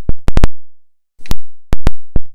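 Hammer striking a steel rear-drum puller threaded onto a Ford Model A axle end: sharp metal-on-metal blows, three in quick succession, then three more after a short pause, each ringing briefly. The blows are shocking the taper-fit rear brake drum and hub loose from the axle.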